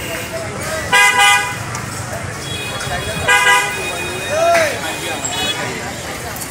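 A vehicle horn sounds two short honks, about a second in and again about two seconds later, over the steady noise of street traffic.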